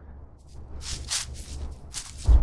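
Wind buffeting the microphone as a steady low rumble, with a few short, soft rustles.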